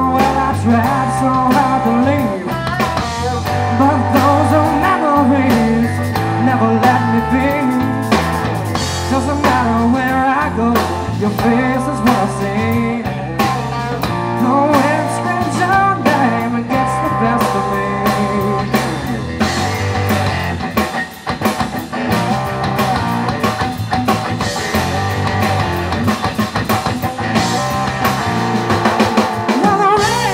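Live rock trio of electric guitar, electric bass and drum kit playing a bluesy rock song through a PA system.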